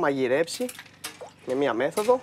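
Light clinks of a steel cocktail jigger against the cup and the steel bar top as liqueur is poured and tipped, a few sharp ticks about half a second and a second in, between stretches of speech.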